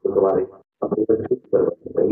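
Only speech: a man talking in a steady flow into a microphone, with short pauses between phrases.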